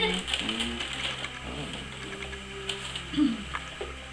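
Cardboard gift box and wrapping paper handled and pried open by hand: light scattered scratching, rustling and small clicks.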